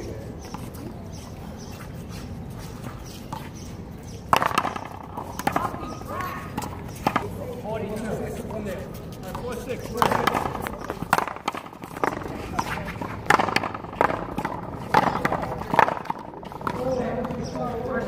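A paddleball rally: a string of sharp, irregularly spaced knocks, about a dozen, as the ball is struck by paddles and rebounds off the concrete wall, beginning about four seconds in and bunching in the second half. Players' voices can be heard between the strokes.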